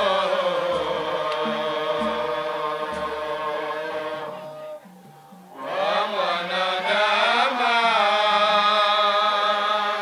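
A man singing a Swahili qaswida (Islamic devotional song) through a microphone in long, wavering held notes. The line breaks off about halfway through, then picks up again about a second later.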